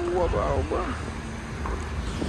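Steady low rumble of outdoor traffic and wind on the microphone at a petrol station forecourt, with a voice speaking briefly in the first second.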